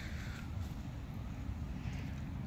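Quiet outdoor background: a steady low rumble with no distinct events.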